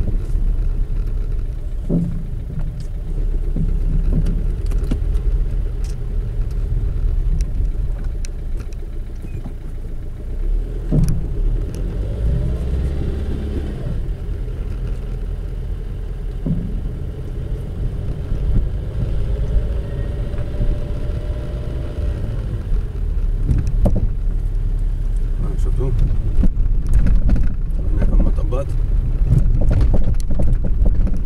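Road rumble inside a car's cabin as it drives slowly over an uneven street, with a few dull knocks from the rear: a knock the mechanic judges to be rubber hitting rubber, not metal.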